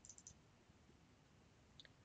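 Near silence with faint computer mouse clicks: a quick cluster near the start and one more near the end.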